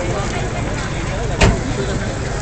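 Background chatter of voices over the low, steady running of car engines idling, with one sharp knock about one and a half seconds in.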